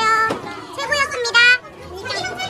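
Young women's excited, high-pitched voices: a short squeal right at the start and a louder one about a second and a half in, with lively chatter between.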